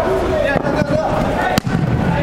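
Indoor five-a-side football game: players' voices calling out in a reverberant hall, and one sharp thump of the ball being struck a little over a second and a half in.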